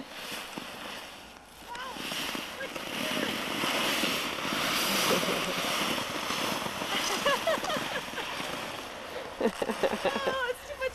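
Plastic sled sliding down a snowy slope with two riders: a rushing hiss of snow under the sled that builds about two seconds in, is loudest midway and fades as the sled slows to a stop. A few short voice sounds come over it near the end.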